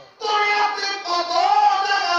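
A man's voice chanting a sermon in a high sung melody with long held notes. It starts after a brief break at the very beginning.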